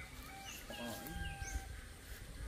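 A faint distant animal call: one held note lasting about a second, with short high chirps repeating about once a second.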